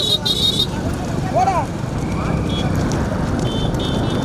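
Motorcycle engines running, with wind buffeting a microphone that rides along on a moving motorcycle. A steady high tone cuts off just over half a second in, and a short rising-then-falling whistle sounds about a second and a half in.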